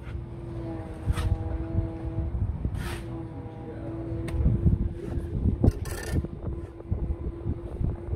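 Building-site sound: a steady engine-like hum from a running machine, over a low rumble, with a few sharp knocks.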